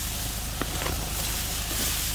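A tractor engine running steadily some way off, a low even hum, under the rustle of tall sorghum leaves brushing past as someone pushes through the crop.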